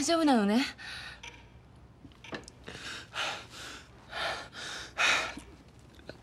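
A person gasping for breath: a run of short, uneven breaths in and out, with the loudest near the end.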